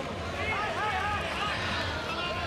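Speech: a few short, indistinct shouts or words over steady arena background noise.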